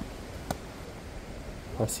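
Wind buffeting the microphone, a steady low rumble, with one sharp pop of a tennis ball being struck about half a second in.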